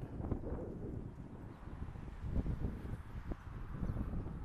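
Wind buffeting the microphone, a low uneven rumble that rises and falls in gusts, with a few light knocks.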